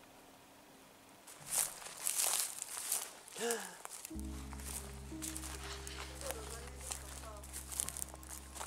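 Footsteps crunching through dry grass and leaf litter, starting about a second and a half in, with a brief voice sound near the middle. A low steady music drone comes in abruptly about four seconds in, under faint background music.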